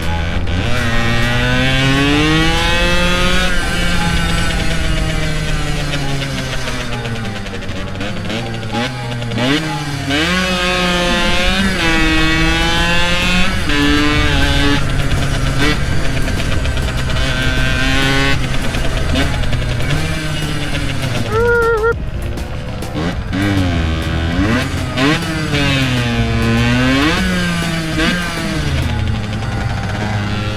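Yamaha YSR50's small two-stroke single-cylinder engine pulling the bike along, its pitch climbing as it revs out and dropping at each gear change, over and over. A short higher-pitched tone sounds about two-thirds of the way through.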